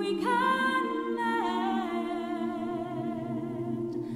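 Mixed choir holding soft sustained chords while a solo soprano voice enters on a high held note about a quarter-second in and steps down to a lower note about a second and a half in.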